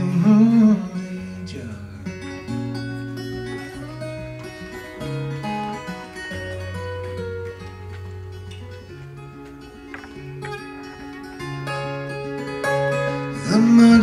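Acoustic guitar playing an instrumental passage between sung lines: held low bass notes under a picked melody. A man's singing voice trails off about a second in and comes back just before the end.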